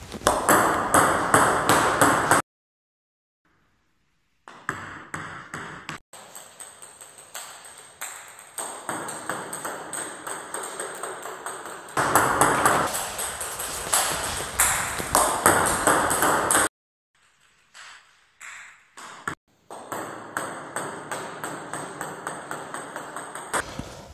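Table tennis ball and bat during backspin serves: the hollow plastic ball clicking off the bat and bouncing on the table in quick runs of sharp ticks. The runs come in several stretches, broken by sudden silences.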